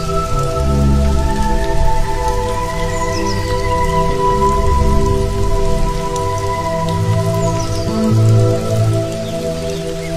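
Calm instrumental background music of long held notes and slow bass over a steady rain soundscape, with a few short high chirps like birdsong.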